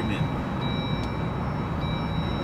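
Steady low rumble of a car driving, heard inside the cabin, with a faint thin high steady tone that drops in and out.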